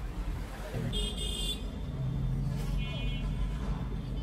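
Busy street noise: a steady low traffic rumble with two short, high-pitched rings, about a second in and again near the three-second mark, over background voices.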